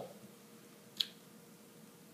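A single short, sharp click about a second in, against quiet room tone.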